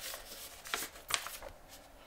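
Paper and card packaging being handled: a few short rustles and slides, the loudest about three-quarters of a second and a second in.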